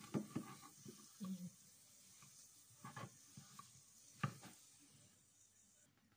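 Faint, sparse knocks and rubbing of a wooden rolling pin pressing slices of crustless white bread flat on a plastic cutting board, with the loudest knock about four seconds in.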